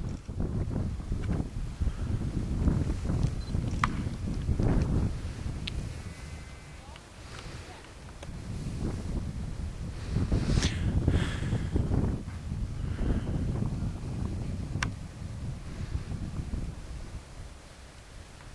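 Wind gusting on the microphone, a low rumble that swells and fades in waves.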